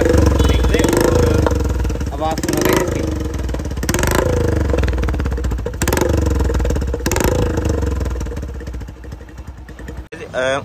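A motorcycle engine running, its pitch rising and falling a few times, with voices in the background and a few sharp knocks.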